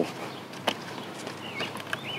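Handling noise from a folded golf push cart frame and its cardboard packing: one sharp click about two-thirds of a second in, among small rattles and rustles.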